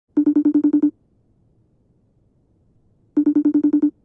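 Phone ringtone for an incoming call: an electronic trilling ring, two rings of about eight quick pulses each, about three seconds apart.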